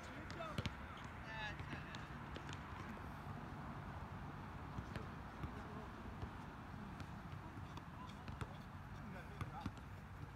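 Outdoor pickup basketball: a basketball bouncing now and then on a hard court, with a few scattered knocks and players' voices faint in the distance, over a steady low background rumble.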